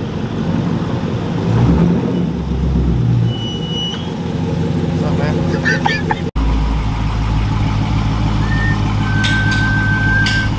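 Car engines idling close by: a Dodge Charger's V8 running at low revs with a short rise about two seconds in, then, after a cut, another engine idling right beside the microphone with a steady deep drone.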